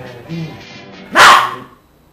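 Soft music, then one loud, short bark-like cry about a second in.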